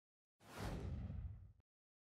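A whoosh sound effect for an animated logo, starting about half a second in. A bright hiss sweeps down into a low rumble, lasts just over a second, and cuts off.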